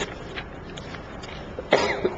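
A person coughing once, a short sharp cough near the end, over faint steady room noise.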